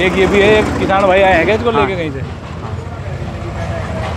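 Tractor diesel engine idling steadily, a low even running sound under talk for the first two seconds and heard on its own after that.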